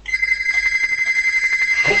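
A phone ringing: a steady, rapidly pulsing high electronic ring that starts just after the beginning and stops right at the end.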